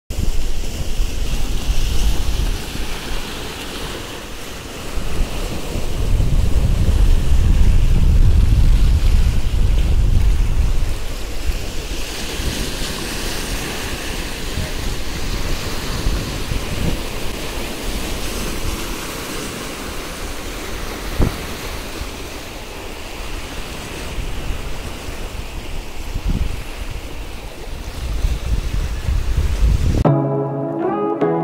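Sea waves breaking and washing over shoreline rocks, a steady surf hiss that swells and ebbs. Wind buffets the microphone, with a long heavy gust from about six to eleven seconds in.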